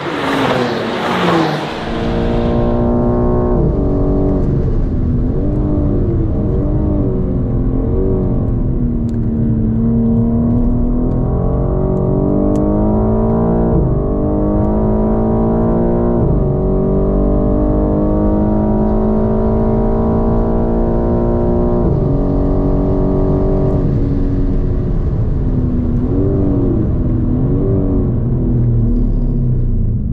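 A car sweeps past at speed in the first two seconds, falling in pitch as it goes. Then a BMW M4 Competition's twin-turbo straight-six is heard on board at track pace, climbing steadily in revs with a sudden drop at each upshift, several times over, and rising and falling through the corners near the end.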